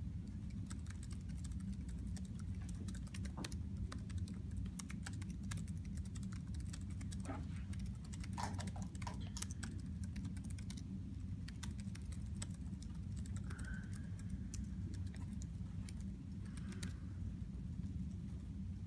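Typing on laptop keyboards: quick, irregular keystroke clicks, dense for the first ten seconds or so and then thinning to a few near the end, over a steady low room hum.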